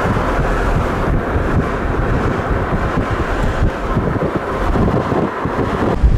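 A car in motion, heard from inside: steady road and engine noise with wind buffeting the microphone.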